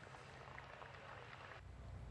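Near silence: faint outdoor background hush on a golf course, with a slight low rumble coming up near the end.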